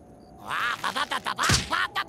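Rabbid cartoon character jabbering loudly in squawky, quack-like gibberish, starting about half a second in, with a sharp hit near the middle.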